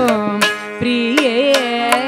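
Carnatic music: a woman's voice singing a wordless, heavily ornamented phrase with wavering gamakas, over sustained harmonium tones and mridangam strokes. The line breaks off briefly about halfway before the next phrase begins.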